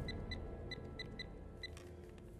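Mobile phone keypad beeps as a number is dialled: six short, clear, high beeps at uneven intervals, one per key press.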